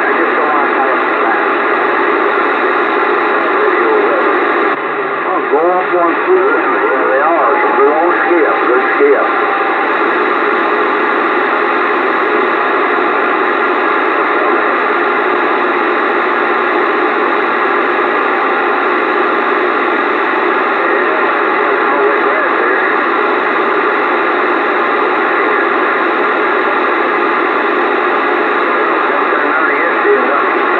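Bearcat CB radio receiving on AM channel 28: a steady band of static with faint, garbled voices breaking through, clearest about five to nine seconds in.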